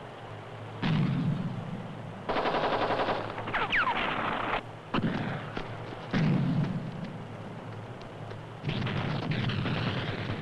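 Gunfire on a field firing exercise: several sharp reports with echoing tails and rapid bursts of automatic fire, one burst about two seconds in and another near the end. A brief falling whine follows the first burst.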